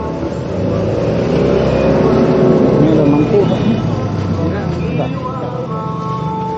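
A motor vehicle's engine passing close by, growing louder to a peak midway and then fading, over voices in the background.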